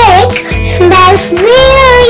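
A young child singing in a high, sing-song voice with long, swooping notes over background music with a repeating bass line.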